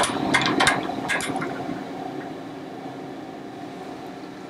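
Steady electrical hum of a running optical comparator, slowly fading, with several sharp clicks in the first second or so as the stage is worked.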